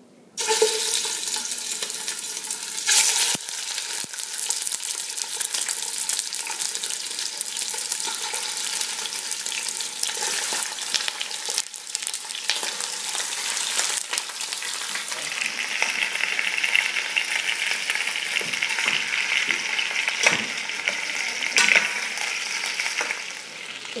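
Raw chicken pieces frying in hot olive oil in a stainless steel pot: a loud, steady sizzle with sharp crackles, starting abruptly about half a second in.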